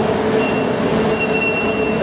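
City bus passing close by: engine and road noise with a thin, steady high-pitched squeal that grows stronger in the second half, over a constant hum.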